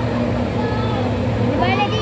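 People's voices at a pool over a steady low hum, with a high voice rising and falling near the end.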